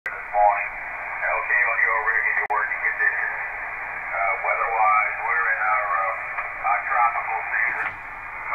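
Single-sideband voice signal on the 20-metre amateur band, received by an Icom IC-7300 transceiver tuned to 14.235 MHz upper sideband: a ham operator's speech heard through the radio, thin and narrow-band with a steady hiss under it.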